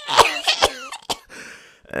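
A man coughing: three or four quick harsh coughs in the first second, then a weaker one and a faint breathy sound.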